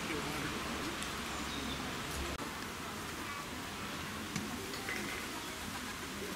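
Outdoor ambience: a steady hiss with faint, indistinct voices in the distance, broken by a very short dropout a little over two seconds in.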